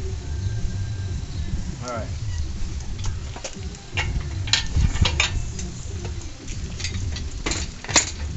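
Short metallic clinks and clanks of the hoist chain and engine hardware as a Chevy small-block hanging from an engine hoist is lowered and guided by hand, coming in a quick irregular series from about three seconds in, with a sharp clank at the end, over a low steady rumble.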